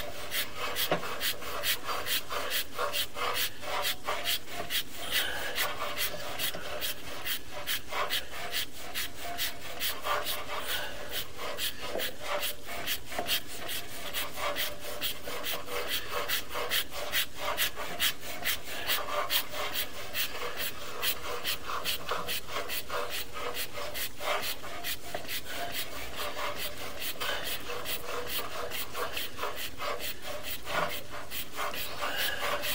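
Sewer inspection camera on its push cable being fed steadily down a 4-inch plastic sewer line: a continuous run of rapid scraping and rubbing clicks, several a second, as the cable and camera head slide along.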